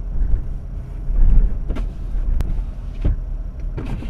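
Car driving, heard from inside the cabin: a steady low road and engine rumble, with a few sharp clicks or knocks spread through it.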